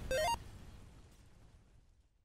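A short 8-bit, chiptune-style video-game blip, a quick rising run of a few notes, comes about a tenth of a second in over the fading tail of the preceding music, which dies away toward silence.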